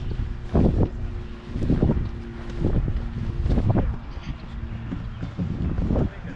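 Wind buffeting the microphone of a handheld action camera, in gusts about once a second as the camera swings with the walker's arm, over a faint steady low hum.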